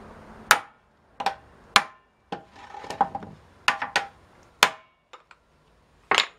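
A hammer striking the metal hoops of an oak barrel, about nine sharp, irregular blows with a brief metallic ring. This drives the hoops down tight over the staves. The last couple of blows near the end are light.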